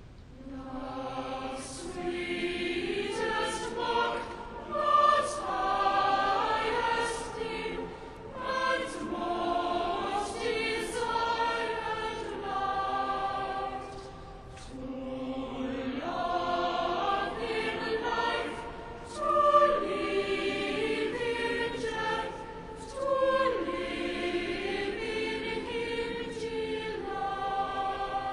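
A choir of children's and adult voices singing together in sustained phrases, with short breaks between phrases about every six to eight seconds.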